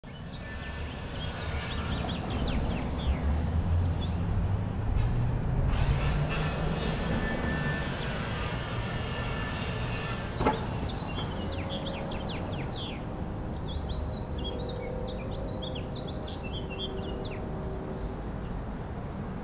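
City ambience: a motor vehicle's engine rumble builds and rises in pitch over the first several seconds, then settles into a steady hum while small birds chirp, most busily in the second half. A single sharp click comes about ten seconds in.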